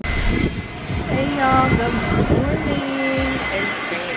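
Aircraft engines at a nearby airport running loudly: a steady, dense noise with a thin high whine in it. A voice is faintly heard over it partway through.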